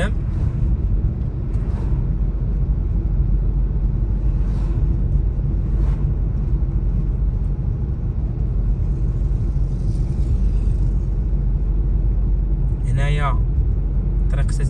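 A car driving at road speed: a steady low rumble of tyres and engine. A short burst of voice comes near the end.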